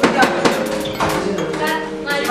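Background music with held chords and a steady beat, with people's voices mixed in.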